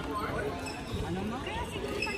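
Indistinct voices in a sports hall, with low thuds of players' footsteps on the wooden court floor between badminton rallies.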